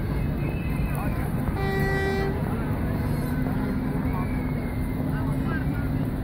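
A horn sounds one short, steady toot about two seconds in, over the chatter of a crowd.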